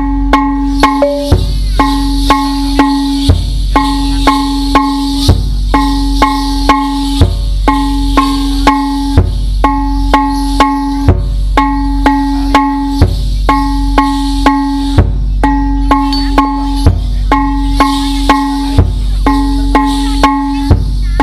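Live percussion-led accompaniment for a topeng ireng dance: a drum beat about twice a second under held pitched notes that break off every couple of seconds, with a high jingle of the dancers' ankle bells.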